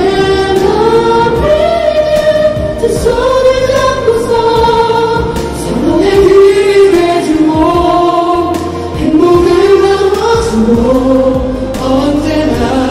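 An ensemble of wedding singers performing a congratulatory song, women's voices prominent, in long held melodic phrases over instrumental accompaniment.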